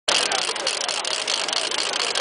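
Steady high-pitched hiss with faint, distant voices calling underneath.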